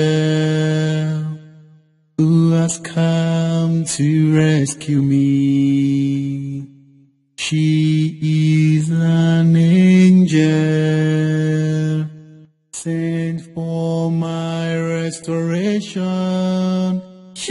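A single voice singing unaccompanied in slow, chant-like phrases of long held notes, with short pauses between phrases.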